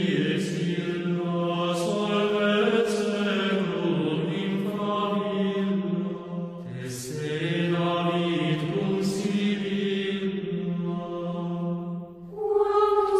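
A choir chanting slowly in long held notes that move gently from pitch to pitch, with the hiss of sung consonants coming through now and then.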